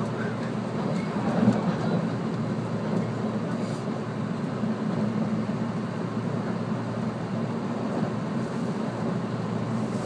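Cabin noise of a 485-series electric multiple unit running along the line: a steady low rumble from the wheels and running gear, heard from inside the passenger car, with one brief louder knock about a second and a half in.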